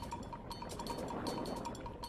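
Water swishing and lapping as a moderate, even wash, with a thin steady tone held underneath.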